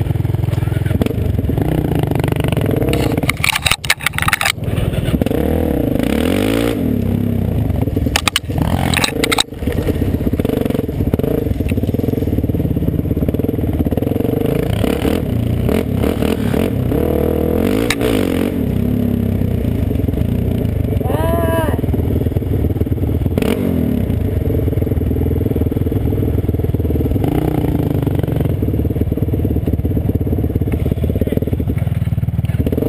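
Single-cylinder four-stroke sport quad engines running along a trail, the nearer one rising and falling with the throttle. Branches scrape and clatter against the quad about four and nine seconds in.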